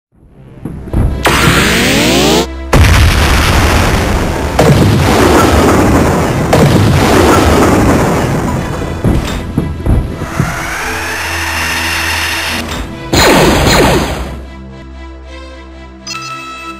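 A mixed battle sound-effects track: a rising sweep, then a long run of loud booms and blasts, a rising whine around ten seconds in, and one more loud blast. It fades near the end into music with steady held tones.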